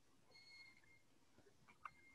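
Near silence, with a faint click shortly before the end.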